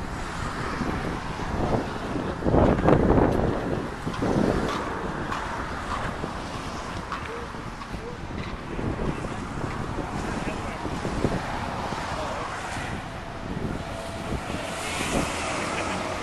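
Wind buffeting the microphone over the rush of water in the fish raceways, with a stronger gust a few seconds in and indistinct voices in the background.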